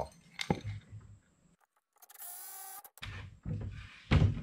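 Wood handling with a sharp knock about half a second in, then a steady whir of about a second from a cordless screw gun driving a screw, fastening a new leg board to a plywood bed frame.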